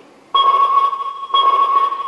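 Fisher-Price Imaginext Battle Rover toy's electronic scanning sound through its built-in speaker: a steady high beep tone that starts about a third of a second in and restarts once about a second later.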